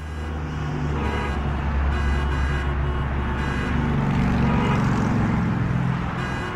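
Road-vehicle sound effect in a segment bumper: a car engine running with traffic noise, a steady low rumble that swells slightly about four seconds in.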